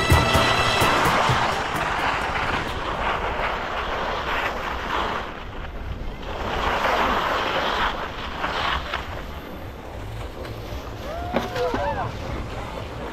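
Skis hissing and scraping over packed snow at slow speed, swelling and easing several times, with wind buffeting the microphone. A voice calls out briefly near the end.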